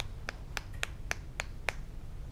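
Small plastic clicks from a dry-erase marker fiddled with in the hands, likely its cap being snapped on and off. About seven sharp, evenly spaced clicks, roughly three a second.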